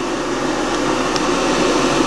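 Electric kettle heating water: a steady rushing noise that grows slowly louder as the water nears the boil.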